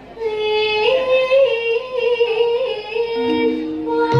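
A Javanese sindhen (female gamelan singer) singing a long, held melismatic phrase in stepped notes with little accompaniment. Lower sustained instrument tones join about three seconds in.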